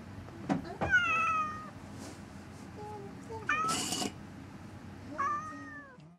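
A domestic cat meowing three times, each call falling in pitch, about a second, three and a half and five seconds in; the first is the loudest and the middle one is rougher.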